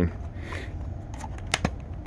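A clear plastic lid being handled and fitted onto a cardboard Pringles can: light rustling, then a few sharp clicks about one and a half seconds in.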